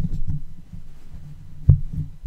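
Computer keyboard keystrokes heard as a run of dull, low thuds, with one sharper knock near the end.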